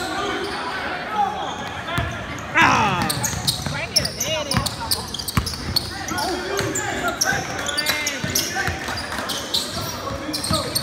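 Basketball game sounds on a hardwood gym court: the ball bouncing and hitting hands in irregular thuds, sneakers squeaking in quick high squeals, and players and spectators calling out in the background.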